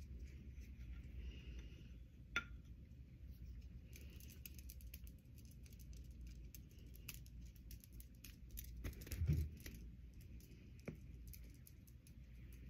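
Faint handling noise over a low steady room rumble: scattered small clicks, a sharp tick a couple of seconds in, a soft thump about nine seconds in and another tick shortly after.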